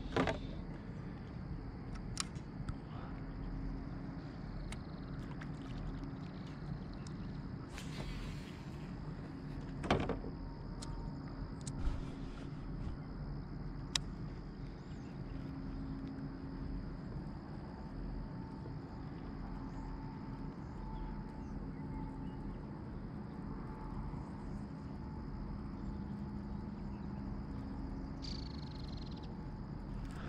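Quiet, steady background with a few faint clicks and knocks from fishing tackle being handled in a plastic kayak, and a short rush of noise about eight seconds in.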